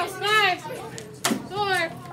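High-pitched children's voices calling out, with a single sharp knock about a second and a quarter in.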